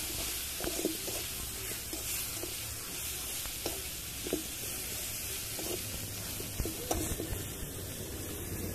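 Vegetables sizzling in a hot black iron wok, with a metal spatula stirring and scraping them against the pan in repeated short strokes.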